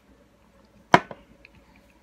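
A sharp click a little before the middle, followed at once by a smaller second click: chopsticks knocking against the instant-ramen cup as they go into the noodles.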